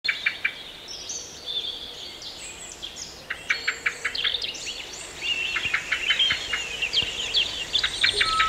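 Birds chirping and calling in many short, quick notes, sparse at first and growing busier about halfway through.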